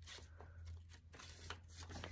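Faint rustling and soft ticks of paper banknotes being handled and laid down, over a low steady hum.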